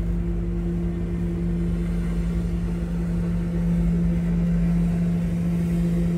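A steady, low mechanical hum at one unchanging pitch over a low rumble, like a motor or engine running without change.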